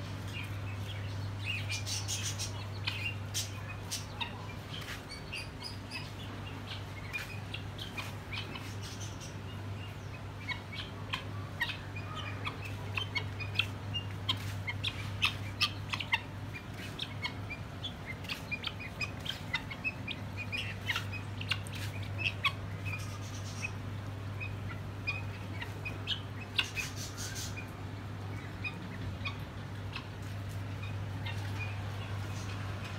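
Birds chirping and calling in many short, quick notes, coming in busier clusters at times, over a steady low hum.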